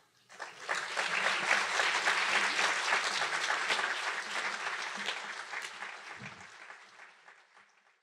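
Audience applauding. It swells within the first second and then slowly dies away.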